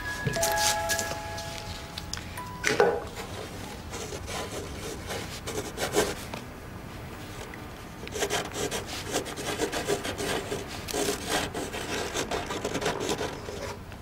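A pen nib scratching across paper as words are handwritten, in quick short strokes that come thick and fast in the second half, with a couple of louder taps about three and six seconds in.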